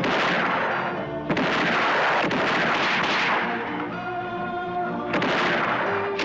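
Film gunshots: three loud reports, each with a long ringing tail. One comes right at the start, one just over a second later and one about five seconds in, over a film score with held notes.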